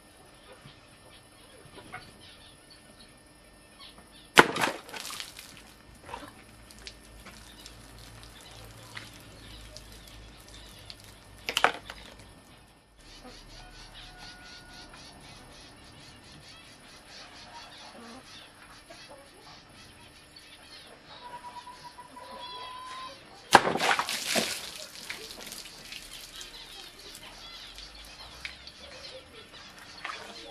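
Handmade knife blade slashing through plastic water bottles: three sharp cutting strikes, about 4, 12 and 24 seconds in, the last followed by a longer trailing clatter.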